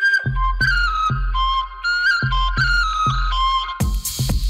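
Electronic dance music from a continuous DJ mix, in a breakdown: the hi-hats drop out, leaving a high, stepping melody over kick drum and deep bass. The full beat with hi-hats comes back just before the end.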